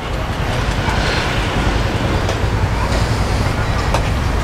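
Steady road traffic noise: a low rumble and hiss of vehicles on the adjacent street.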